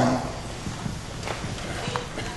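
Low room noise of a church sanctuary with a few faint, short knocks, in the pause before the music starts.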